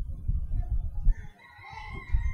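A rooster crowing: one long held call that begins about one and a half seconds in. Before it there is a low rumble.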